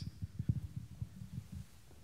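Handling noise from a live handheld microphone carried at a brisk walk: a run of irregular low thumps, several a second, from the grip and footfalls, the loudest about half a second in.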